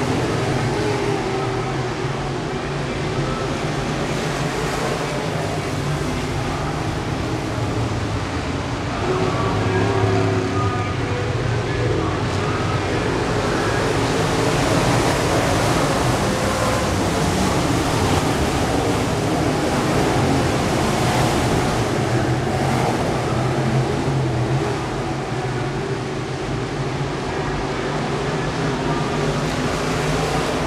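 Engines of IMCA Modified race cars running at racing speed around an oval, a steady mass of engine noise that grows louder from about nine seconds in as cars pass close, easing again after about twenty seconds. Voices mix in underneath.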